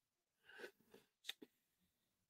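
Near silence: room tone, with a faint soft sound about half a second in and two faint clicks a little after one second.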